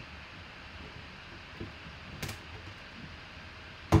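Knife blade cutting the seal on a cardboard box, with a sharp click just past two seconds and a louder snap near the end. The blade is dull and struggles with the cut.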